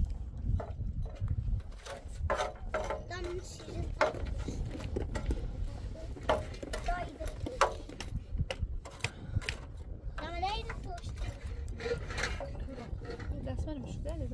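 Metal spatula scraping and tapping in a blackened metal pan of embers as flatbread is turned and pressed, a string of short clicks and scrapes over a low steady rumble. A high child-like voice calls out about ten seconds in.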